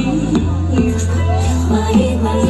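Pop song performed live: a woman singing into a microphone over a backing track with a steady, deep bass line and beat.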